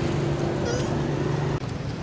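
A short, high, wavering squeak from an infant long-tailed macaque, about a second in. Under it runs a steady low hum that stops near the end.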